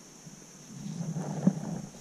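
Low rumbling handling noise, as of gloved fingers turning a glass object close to the microphone. It builds up about two-thirds of a second in, with one sharp click about one and a half seconds in.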